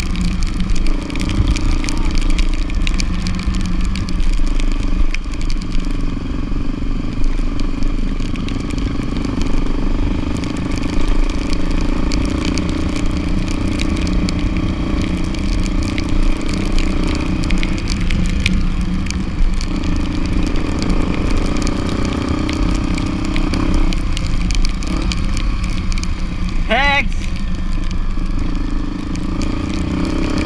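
Small motorcycle engine running at a steady cruise on a dirt road, heard from the bike itself, its note shifting a little as the speed changes, with wind noise on the microphone. A brief high, wavering call cuts through about three seconds before the end.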